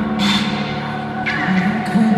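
Live concert music in a large arena, heard from among the audience: sustained notes from the band, with no clear lead vocal.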